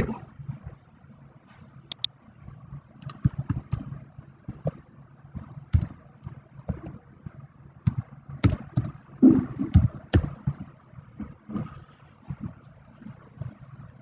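Computer keyboard typing and mouse clicking: irregular sharp clicks, some with a dull thud, coming in scattered clusters.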